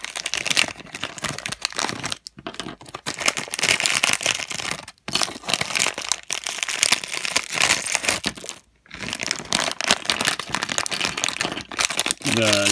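A plastic LEGO minifigure blind-bag packet crinkling and tearing as it is opened and rummaged through by hand, in irregular bursts with a few brief pauses.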